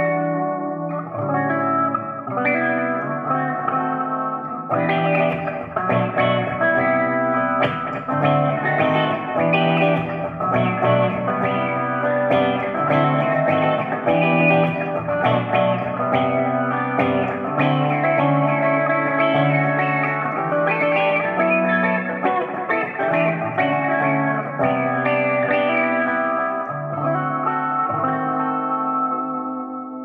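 Gretsch hollow-body electric guitar played through an MXR Bass Envelope Filter pedal with the decay turned all the way up: a continuous run of envelope-filtered notes and chords. The tone is thin and trebly, with the low end gone.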